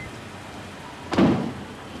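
A Toyota Alphard minivan's side door shutting about a second in, one heavy thud, over a steady hiss of rain.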